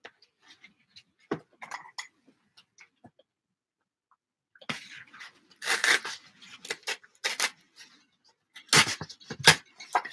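Paper being handled and torn against a metal straightedge ruler: light paper clicks and rustles, then a longer stretch of tearing and rustling from about halfway, and a few sharp knocks near the end as the ruler and paper are moved on the table.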